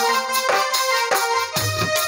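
Electronic keyboard playing a held melody line of a devotional Holi dhamal, with low drum beats coming in about one and a half seconds in.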